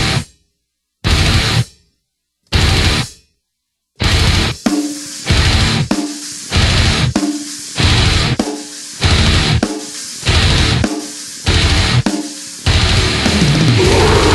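Death metal played on a drum kit with cymbals over the band's heavy guitar track: three short full-band stabs, each cut off by silence, then from about four seconds in a driving section accented about every 0.6 seconds, breaking into a continuous fast wall of drums and guitar near the end.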